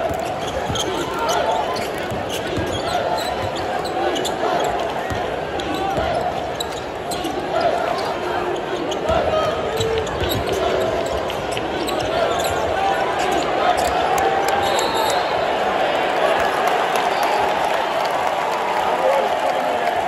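Basketball dribbled on a hardwood arena court, with short knocks throughout, over the steady chatter of a large arena crowd.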